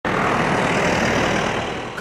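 Steady roadside traffic noise, a broad rushing sound that eases off slightly near the end.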